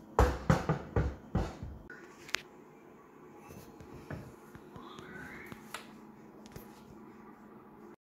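A rapid run of five or six knocks in the first two seconds as an aluminium door panel is set down and handled on a wooden worktop, then a single sharp click and fainter light clicks and taps.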